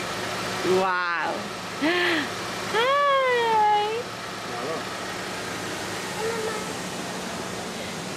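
Excited human voices making wordless exclamations, with one long exclamation about three seconds in whose pitch rises and then falls, over a faint steady hum.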